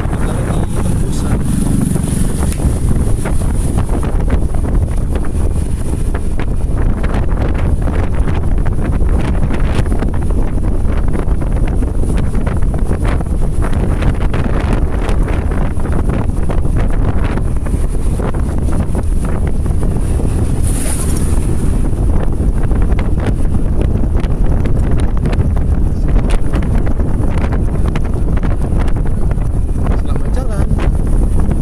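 Wind buffeting the microphone over a steady low rumble of a vehicle driving along a wet road, with a thin high whine throughout.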